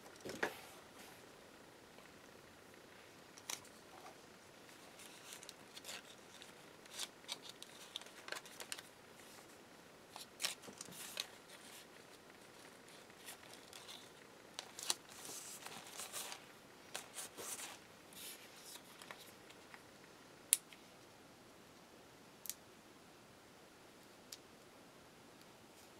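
Faint, scattered rustling and light crackles of sticker label paper being handled and pressed down onto a paper journal page, with two sharp clicks near the end.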